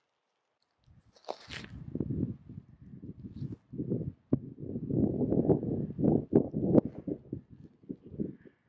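Close rustling and knocking right at the microphone, with scattered sharp clicks, starting about a second in after a brief hissy scrape: handling noise as the camera is moved.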